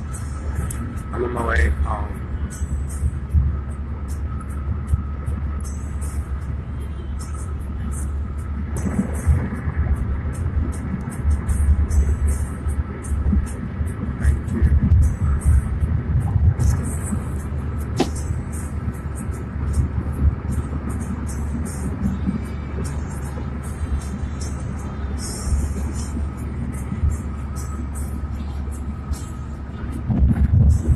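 Steady low rumble inside a car's cabin, with music and voices playing over it.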